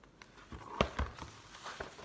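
Handling noise from a large hardcover picture book being moved and lowered: a few knocks and paper rustles, the loudest about a second in.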